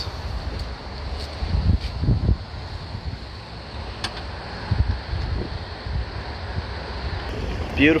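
Wind buffeting the microphone in uneven low gusts, with a single sharp click about four seconds in.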